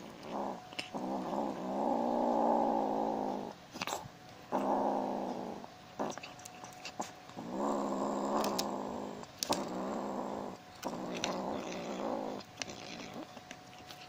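Tabby kitten growling over its food in a series of long, rumbling growls, each one to two and a half seconds long with short gaps between: it is guarding its fried chicken from the hand beside it. Small sharp clicks sound in the gaps.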